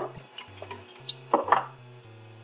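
A few light clicks and clatters of hands handling a small plastic power connector and wires, the loudest pair about one and a half seconds in, over soft background music with a plodding bass line.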